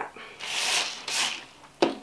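Rustling and scraping as a moss-filled mesh pole is worked into a plastic self-watering pot: two short scratchy rubs, then a sharp click near the end.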